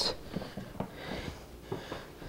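A few faint clicks and light rubbing from the food processor's plastic lid as it is handled and checked that it is locked on; the motor is not running.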